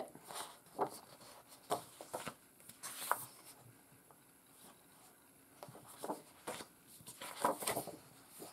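Sheets of printed cardstock being handled and swapped: scattered soft paper rustles and slides, with a quieter stretch in the middle.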